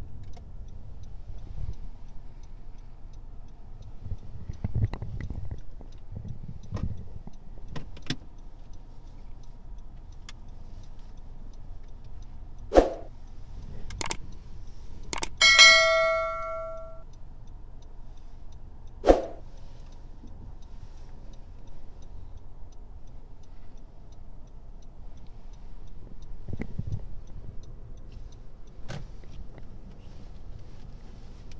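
Low steady cabin noise of a car moving slowly. About halfway through, an added subscribe-button sound effect plays: a few sharp clicks and then a single ringing bell chime that fades away.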